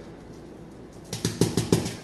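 A bottle of dry beef rub being shaken and tapped to spread seasoning over a brisket: a quick, uneven run of sharp taps and rattles starting about a second in, after a quiet first second.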